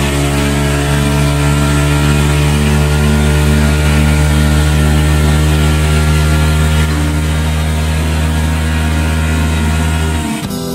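Tuned Honda Click 125 scooter engine held at full throttle on a roller dyno near its top speed: a loud, steady high-revving drone whose pitch barely changes as the speed creeps up.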